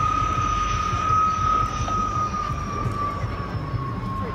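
De Havilland Vampire jet flying past, its Goblin turbojet giving a steady high-pitched whine over a low rumble; the whine's pitch sinks slowly as the jet moves away.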